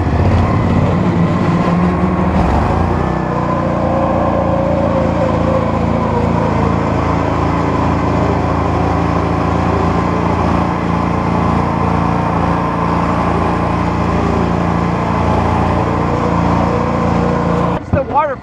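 Coot ATV's engine running steadily while driving slowly along a rough woodland trail. Its speed rises about two seconds in, then holds even.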